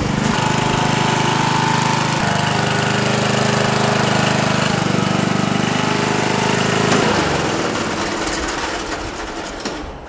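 Riding lawn tractor's small gasoline engine running with a rapid, even putter, then fading away over the last three seconds.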